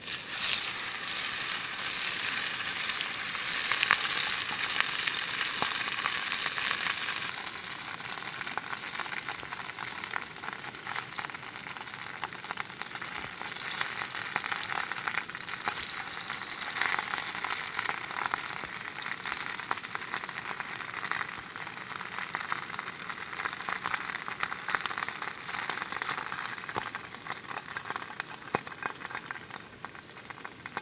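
Food sizzling in a metal pan over a wood campfire, a dense hiss full of fine crackles. It starts suddenly, is loudest for the first seven seconds, then settles a little quieter.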